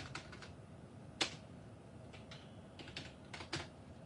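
Faint, irregular clicks and taps over quiet room tone, with one sharper click about a second in and a small cluster near the end.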